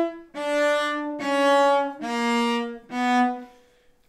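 A cello played with the bow: four separate sustained notes of about a second each, mostly stepping down in pitch. The left hand shifts between positions led by the first finger, with the other fingers following.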